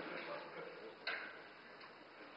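A single sharp click about a second in, over quiet room sound, with the fading tail of a louder noise at the start.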